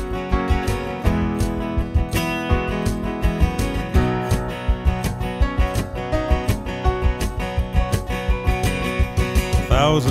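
Instrumental passage of an acoustic trio: strummed acoustic guitar and keyboard piano chords over a steady cajon beat, with no singing.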